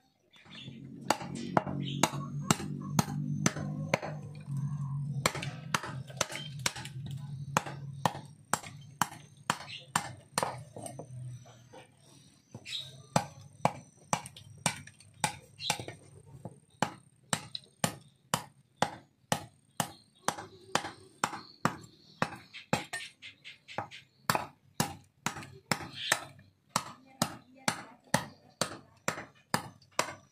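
A small hammer tapping on a wooden stump in a steady run of sharp taps, roughly two or three a second, while the handle fittings of an old badik dagger are worked off. A low steady drone sits under the first dozen seconds.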